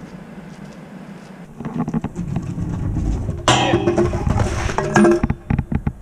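Trick scooter rolling up on paving, then a run of sharp knocks and clatter near the end as the rider falls off the handrail and he and the scooter hit the ground; music plays over part of it.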